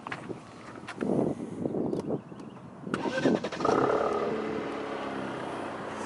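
Alfa Romeo Giulia engine being started after a jump start for a dead battery: a stretch of cranking, the engine catching about three seconds in, then idling steadily.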